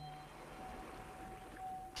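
Low-level studio room tone between words: a faint steady hiss with a thin, steady tone.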